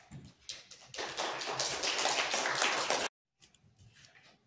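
Applause from a small congregation: a dense patter of hand claps that builds about half a second in and cuts off suddenly about three seconds in.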